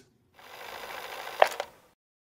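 Cassette-tape deck sound effect: tape running with a steady hiss, a sharp mechanical click about one and a half seconds in and a smaller one just after, then it cuts off.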